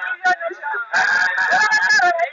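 Voices singing in a Maasai-style chant. In the second half a high note is held for about a second.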